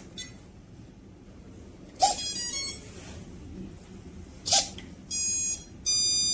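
Electronic power-on beeps from radio-control gear (an AT9S Pro transmitter and the A560's electronics) being switched on: two short chirps a couple of seconds apart, then two steady half-second beeps near the end.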